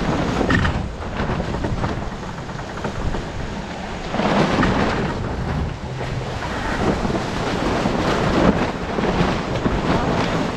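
Wind buffeting the microphone and water rushing and splashing along a Fareast 28R sailboat's hull as it sails fast downwind. The noise is steady, with a swell about four seconds in and another near the end.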